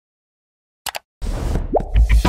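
Cartoon pop sound effects for an animated intro: two quick pops just before the one-second mark, then a hissing rush with a short upward bloop near the end.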